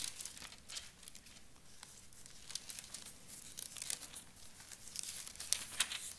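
Pages of two Bibles being turned and leafed through: a run of soft papery rustles and flicks, a little louder near the end.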